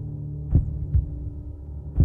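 Slow heartbeat-style double thump, one pair about every second and a half, over a steady low drone: a suspense soundtrack effect rather than live sound.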